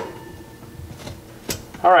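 A single sharp click about a second and a half in as the glass oven-light cover is threaded back onto its socket, against otherwise faint room sound.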